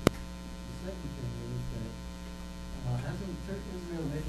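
Steady electrical mains hum on the recording's audio feed, with a single sharp click just after the start. Faint, indistinct speech sits underneath.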